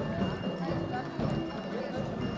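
Several people talking in the background, with an irregular clatter of a small hand-pulled cart's hard wheels and footsteps on brick paving.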